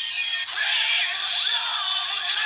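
Bandai DX Gamer Driver toy belt playing its electronic transformation music with a synthetic voice through its small built-in speaker, thin with no bass. A melody comes in about half a second in.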